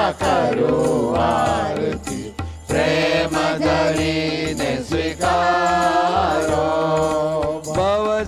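Hindu devotional chant sung by a voice with musical accompaniment: a held low drone and light percussion. The singing breaks off briefly a little over two seconds in.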